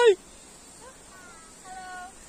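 A short, loud high-pitched call from a person's voice right at the start, then faint drawn-out high calls in the background.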